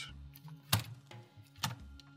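Laptop motherboard being handled and set down flat on a work mat: two light clicks about a second apart.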